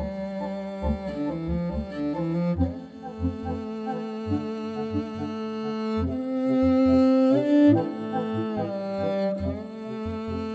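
Ensemble music led by a bowed morin khuur (Mongolian horsehead fiddle), with long held notes over a low pulsing bass.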